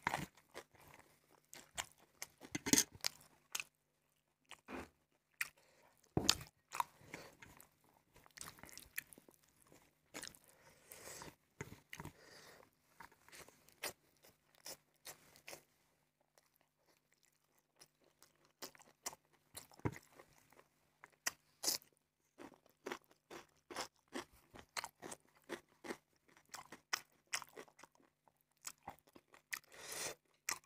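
Close-miked eating sounds of a man eating rice and fatty pork curry with his hand: chewing and wet mouth clicks in irregular bursts. There is a quieter stretch of a few seconds just past halfway.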